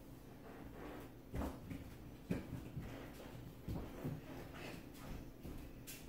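Faint, scattered knocks and clunks of household objects being handled, about five over a few seconds, the last a sharp click.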